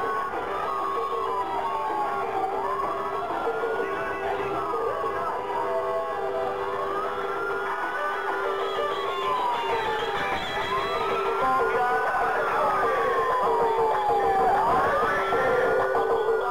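Police car siren on a slow wail, each cycle rising quickly and then falling slowly, repeating about every four seconds, over music and a steady low tone.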